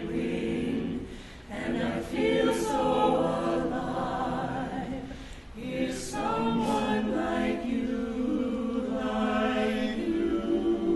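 Small mixed vocal ensemble of men's and women's voices singing in harmony, a cappella, with sustained chords. The singing breaks briefly between phrases about a second and a half and again about five and a half seconds in.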